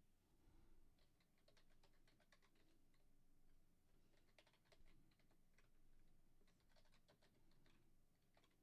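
Very faint computer keyboard typing: a run of soft key clicks, with short pauses, as a user name and password are typed.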